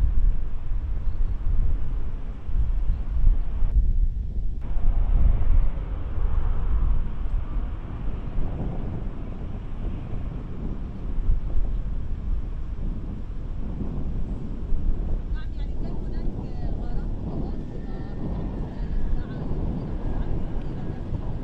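Outdoor ambience from a live camera microphone: a low, uneven rumble, louder in the first half.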